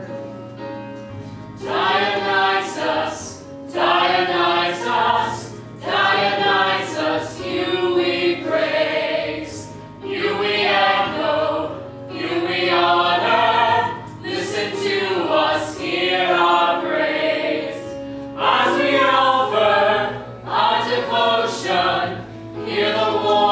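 A small mixed chorus of men and women singing together in phrases of about two seconds, with short breaks between them.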